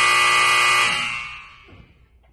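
A loud game-show style buzzer sound effect: one harsh, steady tone with many overtones that holds for about a second, then fades out over the next half second.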